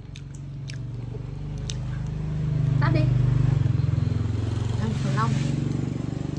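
A small engine running steadily with a fast pulse. It gets louder over the first three seconds and shifts in pitch once or twice.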